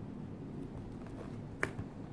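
One sharp snap of a glossy art-book page near the end, as fingers catch its edge to turn it, over a low steady hum.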